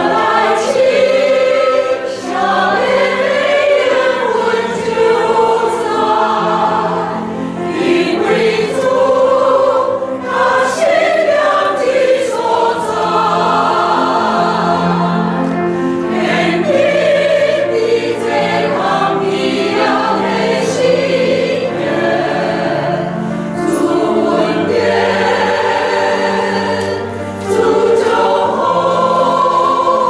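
Mixed church choir of men's and women's voices singing a hymn in held, slowly moving chords.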